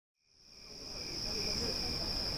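A steady, high-pitched insect buzz that fades in from silence over the first second, over a low background rumble.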